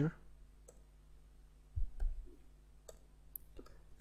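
A handful of scattered computer keyboard keystrokes, about six separate clicks spread over a few seconds, over a faint steady low hum.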